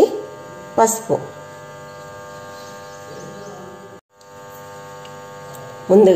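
A steady electrical hum with a low buzz to it, dropping out briefly about four seconds in.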